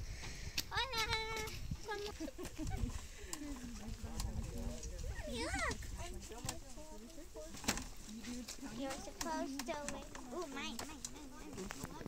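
Indistinct background chatter of several people, adults and children, talking and calling out at a distance from the microphone. There is one sharp click about two-thirds of the way through.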